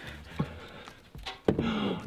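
A single light knock, then about one and a half seconds in a cordless drill spins up, driving a screw down into the particleboard floor of a flat-pack kitchen base cabinet.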